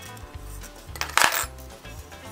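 Metal wagon-hub bands clinking against each other once about a second in, with a short metallic ring, over background music with a steady bass line.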